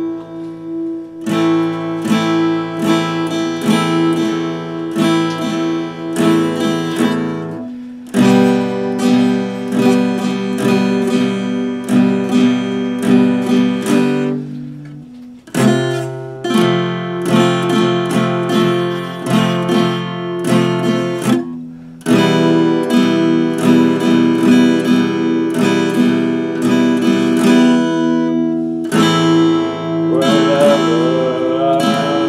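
Epiphone acoustic-electric guitar strummed in chords, in four phrases of about seven seconds with a short break and a chord change between each.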